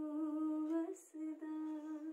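A woman humming a melody unaccompanied: two long held notes with a short break about a second in.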